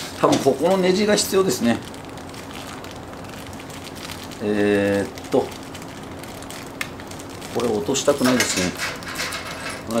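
A man laughs, then rummages through a small plastic bag of grill assembly screws and washers: faint crinkling of plastic and small metallic clicks. A short hum comes about halfway through, and muttering near the end.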